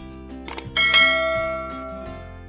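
Subscribe-button animation sound effect: a quick double mouse click, then about three-quarters of a second in a bright bell chime that rings on and fades slowly, over soft background music.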